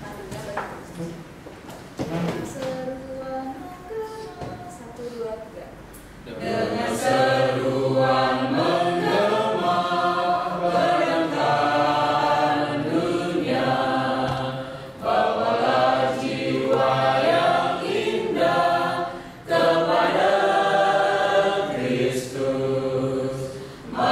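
A small congregation singing a hymn together in a room: quiet and thin at first, then the full group comes in loudly about six seconds in, with brief breaths between phrases.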